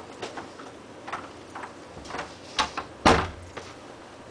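A door being handled: a string of sharp clicks and knocks from the handle and latch, the loudest a knock about three seconds in.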